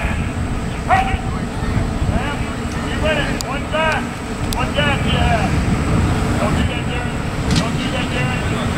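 Coaches and players calling out at a distance in short shouts, over a steady low rumble.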